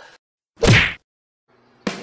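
A single short whoosh sound effect, about half a second long, standing alone in dead silence.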